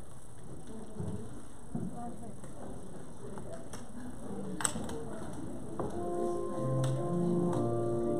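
Quiet room noise with a sharp click a little past halfway; about six seconds in, a keyboard begins playing sustained chords over a low, moving bass line.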